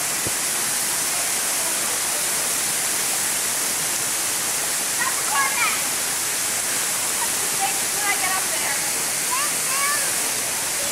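A waterfall's steady rush of falling water. Faint voices call out about halfway through and again near the end.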